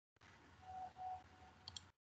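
Faint hiss from an open microphone on a video call, cutting in and out abruptly, with a faint short tone heard twice in the middle and a couple of quick clicks near the end.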